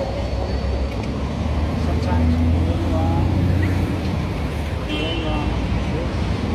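City street traffic: a vehicle's low rumble that swells about two seconds in and eases off near four seconds, with faint voices in the background.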